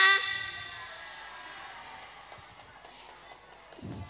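A girl's voice through a PA system draws out the end of a word and stops just after the start. A pause follows with only low background noise, and a soft low thump comes near the end.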